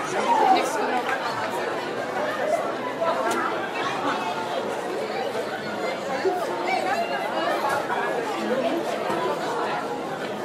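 Classroom chatter: many students talking at once in a continuous, overlapping babble, with no single voice standing out except a slightly louder one about half a second in.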